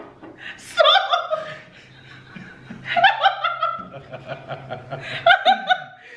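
A woman laughing hard in three bursts of quick repeated 'ha' pulses, about a second, three seconds and five seconds in.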